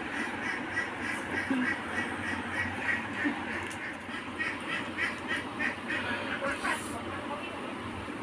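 An animal calling in rapid runs of short repeated calls, about four or five a second, a long run at first and a second run from about halfway in.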